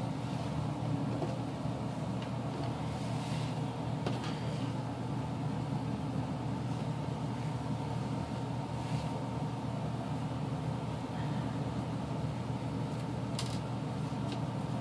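Steady low machine hum with a faint steady whine, and a few faint brushing sounds of hands smoothing cotton fabric.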